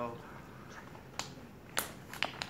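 Two short, sharp clicks, one about a second in and a louder one near the end.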